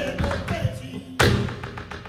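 Flamenco dancer's footwork on the stage: one loud stamp about a second in, followed by a run of lighter, quicker taps. This sounds over the tail of a sung bulería line and the guitar.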